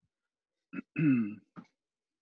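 A person clearing their throat: a short catch, a louder voiced rasp that falls in pitch, then a brief last catch.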